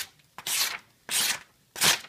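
A freshly sharpened Benchmade Griptilian knife blade slicing through a sheet of lined paper, three quick cuts a little over half a second apart, each a short papery rasp. It is a test of the edge's sharpness.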